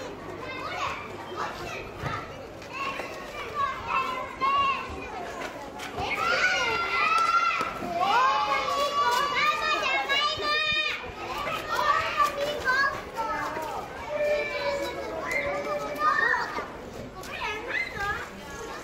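Many children's voices calling and shouting over one another, high-pitched, with no clear words.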